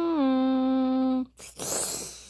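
A voice holding a long hummed note, stepping down to a lower steady pitch about a quarter second in and breaking off a little past a second. A short burst of rushing, hissing noise follows near the end.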